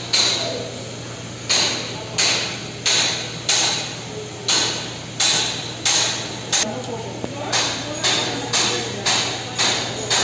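Air-driven pump of a hydraulic bolt tensioning machine cycling, one clanking stroke with a hiss of exhaust about every 0.7 seconds, over a steady low hum.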